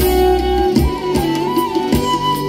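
Live instrumental band music: a side-blown bamboo flute plays a stepping melody over bass and hand drums keeping the beat.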